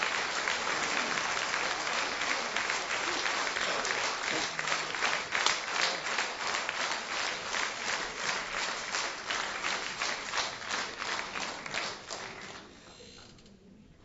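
Theatre audience applauding, the clapping at times falling into a steady beat, then dying away about thirteen seconds in.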